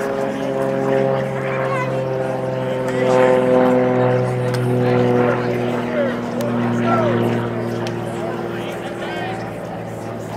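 A steady engine drone made of several tones, slowly falling in pitch, with voices faintly in the background.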